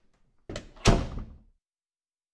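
A brief rustle followed by a single dull thump a little under a second in, dying away within about half a second.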